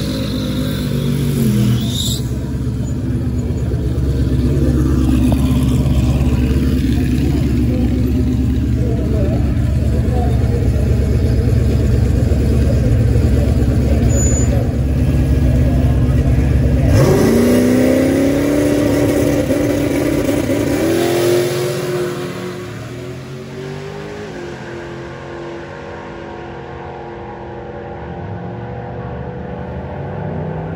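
A Ford Mustang drag car's engine holding a loud, steady rumble through its burnout and staging, then launching about 17 seconds in. The engine pitch climbs hard, drops back once a few seconds later and climbs again, and the sound fades quickly as the car runs away down the quarter mile.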